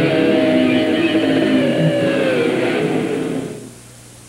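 Doom metal song with distorted electric guitars and drums, fading out about three and a half seconds in as the track ends.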